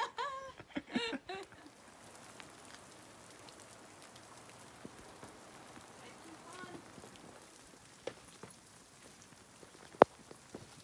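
Light rain falling: a faint, steady patter with scattered small drop ticks. A man's laughter and voice fill the first second or so.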